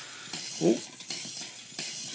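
Small electric drive motors of a line-following robot whirring in short, uneven surges as it steers, missing a sharp corner, with a brief "Oh!" about half a second in.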